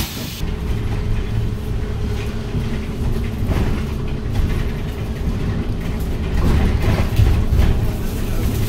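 Cabin sound of a Woojin Apollo 1100 electric city bus driving: a steady low rumble of road and body noise, with a thin steady hum that comes in about half a second in. A short click sounds right at the start.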